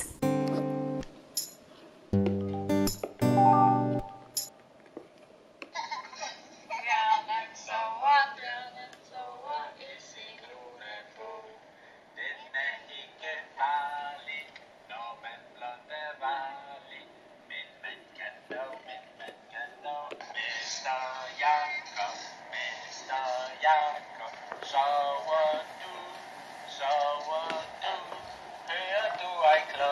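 A few short musical notes, then a home-recorded voice singing a children's song, played back through the Chameleon Reader talking pen's small speaker, thin-sounding with little bass.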